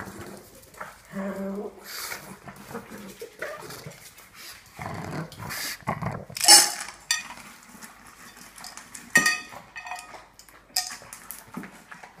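A pug making excited noises at feeding time, with a few sharp clatters of a steel food bowl on a tile floor, the loudest about six and a half seconds in.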